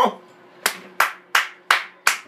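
Hand clapping: four sharp, evenly spaced claps, about three a second.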